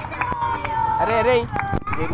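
Several boys' voices chattering and calling out over one another, with a few sharp knocks in between.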